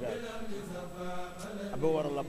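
A man chanting religious verses in a drawn-out, melodic voice, holding long notes; one phrase ends and the next begins near the end.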